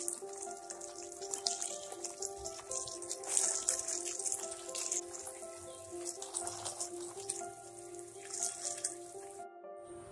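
Background music with a simple repeating melody over the hiss of water spraying from a garden hose nozzle onto potted plants, the spray swelling and fading as it sweeps across the pots. Both cut off about half a second before the end.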